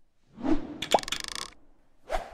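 Animation sound effects: a whoosh swelling up about half a second in, then a short pop with a quick run of clicks around one second in.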